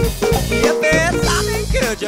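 Funk-rock band playing live: drum kit and bass keep a steady groove under guitars and melodic lines in the middle range.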